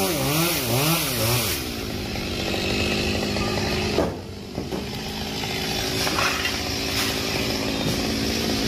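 Chainsaw cutting a limb of a large sộp fig tree. Its engine pitch swings up and down for the first second or so, then it runs steadily through the cut, with a brief drop in level about halfway.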